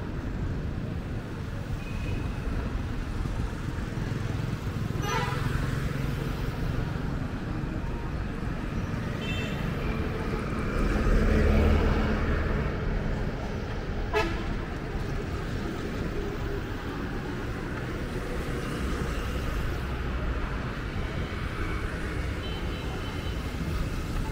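Busy road traffic with motorbikes and other vehicles running past and a few short horn toots. A vehicle passes loudest about halfway through, and there is a single sharp click a little later.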